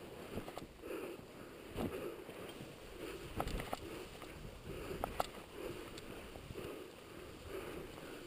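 Boots plunging and crunching through soft, fresh snow in steady, uneven steps on a steep descent, with breathing and a few sharp clicks a little after the middle.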